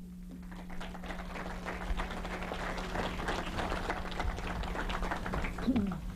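Audience applauding, a dense patter of many hands that builds over the first second and dies away near the end, over a steady low electrical hum.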